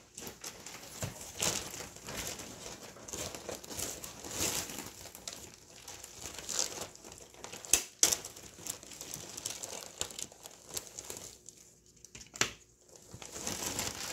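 Irregular crinkling and rustling of things being handled, with a few sharp knocks: two close together about eight seconds in and one more past twelve seconds, after a quieter lull.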